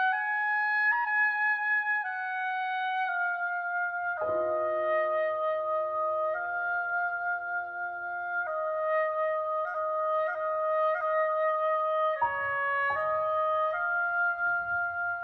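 Oboe playing a Persian folk melody in long held notes, alone at first; about four seconds in, a piano enters with sustained chords beneath it, and the two play on together.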